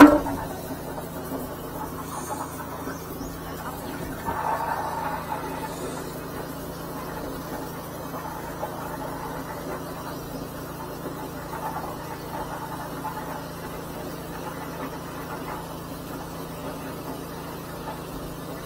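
High-pressure sewer jetter running steadily, driving water through a hose into a drain under a closed manhole lid, with a constant low drone.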